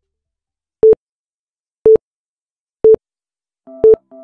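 Countdown timer beeping once a second: four short, identical single-tone electronic beeps. Soft synth keyboard music starts up near the end.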